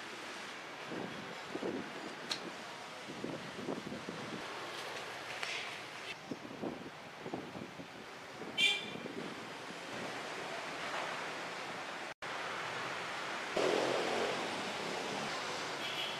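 Outdoor background noise: a steady hiss with wind on the microphone and faint scattered sounds, plus a brief high chirp about nine seconds in. The sound drops out for an instant about twelve seconds in and is a little louder after that.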